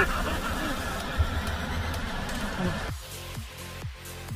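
Waterfall rushing into a canyon pool, with a short laugh at the start. About three seconds in, the live sound cuts to electronic dance music with a steady kick-drum beat of about two beats a second.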